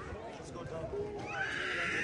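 Background chatter of people talking, then a loud, high-pitched cry that starts a little past halfway through and lasts to the end.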